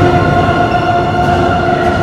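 Live symphony orchestra holding a sustained chord over a low rumble in the bass.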